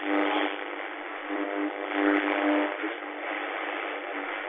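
Radio static between stations: a thin, tinny hiss with faint steady tones breaking in and out, as the dial is turned from one broadcast to the next.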